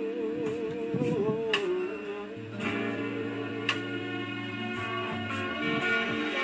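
Instrumental backing of a slow soul ballad with guitar and bass. A man's sung note, held with vibrato, ends about a second and a half in.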